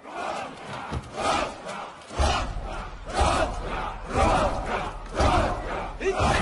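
A group of voices yelling in repeated bursts, about once a second. A heavy low rumble joins in about two seconds in.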